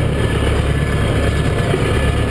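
Massey Ferguson 590 tractor's four-cylinder diesel engine running steadily, heard from inside its cab, which has no glass.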